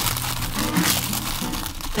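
Packing paper crinkling and rustling as it is pressed and tucked into a bowl by hand, over quiet background music.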